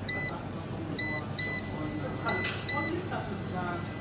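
Solar inverter's touch-panel keys beeping as they are pressed: about five short, high, single-pitched beeps, some in quick pairs, as the settings menu is stepped through. A low steady hum runs underneath.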